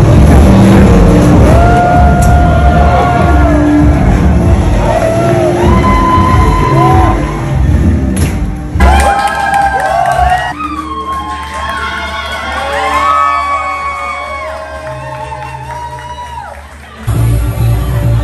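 Loud music with a heavy beat in a crowded hall, with people shouting and whooping over it. The beat thins out about halfway through and comes back hard near the end.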